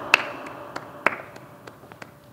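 A series of sharp, irregular taps, a few a second, with two louder ones near the start and about a second in, over faint room hiss.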